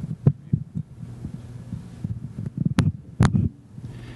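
Handheld microphone being handled as it changes hands between panelists, giving a few short thumps and knocks, two louder ones near the end, over a steady low hum from the sound system.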